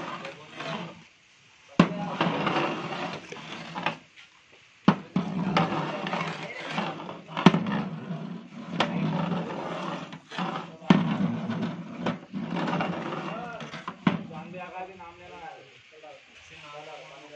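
Indistinct voices talking, broken by about six sharp metallic knocks a couple of seconds apart: a long metal stirring rod striking a large metal cooking pot of rice as it is stirred.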